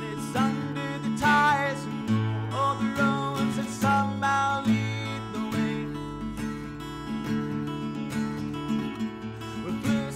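Acoustic guitar strummed in a steady pattern as live song accompaniment, with a man's singing voice at times.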